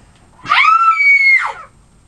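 Young girls screaming, one high-pitched scream about a second long that jumps higher partway through.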